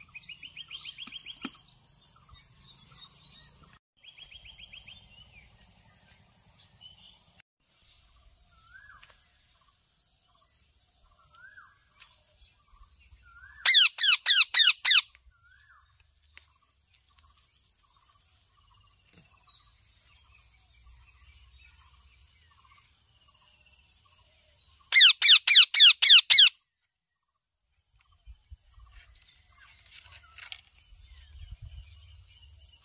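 Rose-ringed parakeets calling: two loud bursts of about six rapid calls each, one a little before halfway and one near the end. Softer chirps and short trills come between them.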